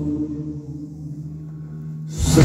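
A live rock band's held low notes ringing on and slowly fading, with no singing over them.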